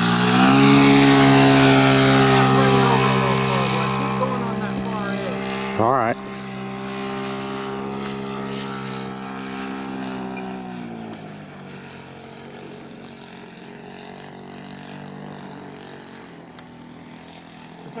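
Saito 100 four-stroke glow engine on a large RC J3 Cub, opened up as the plane passes low and climbs away instead of landing. The engine note is loud and steady at first and then fades with distance, dropping in pitch about eleven seconds in.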